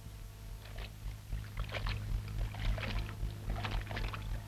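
Water splashing in repeated strokes about once a second: a person swimming. A steady low hum runs underneath.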